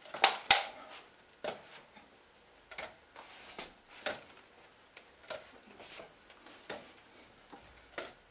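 A plastic drink bottle and a cloth raven hand puppet being tossed up and caught by hand, each catch giving a short tap or crinkle, roughly one every half-second to second. The two loudest catches come near the start.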